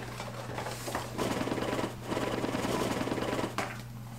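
Cardboard scraping and rattling as a small box is slid out of a long cardboard box, a fast, dense rubbing in two stretches from about a second in until near the end, with a short break in the middle.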